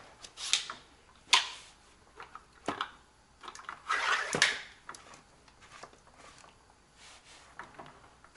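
Plastic reverse osmosis filter housing and its housing wrench being handled: a few scattered knocks and clicks, the sharpest about a second in, with a short rustle about four seconds in.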